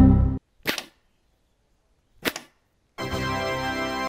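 A hard puff of breath fired through a homemade PVC-pipe blowgun, then a sharp smack about a second in as a nail-tipped paper dart strikes a laminated particleboard panel, and another short sharp knock a little past two seconds. From about three seconds a steady, held organ-like musical tone sounds.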